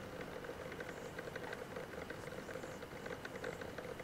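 An old computer's cooling fan running steadily with a faint hum and a light, fast clatter, heard through a webcam call's microphone. The fan's clattering is a sign of the ageing machine acting up.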